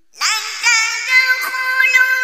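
Melodic Qur'an recitation: a solo voice comes in sharply with a quick ornamented run, then holds one long, high note.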